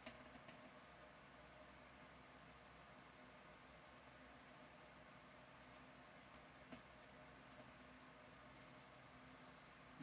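Near silence: room tone with a faint steady hum and a few faint clicks, twice near the start and once about two-thirds of the way through.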